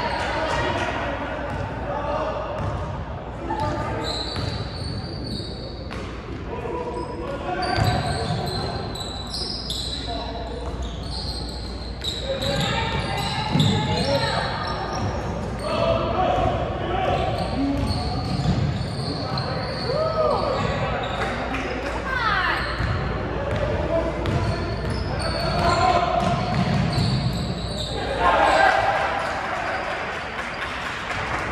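A live basketball game in a large gym: the ball bouncing on the hardwood court, sneakers squeaking, and indistinct calls and chatter from players and spectators, all echoing in the hall.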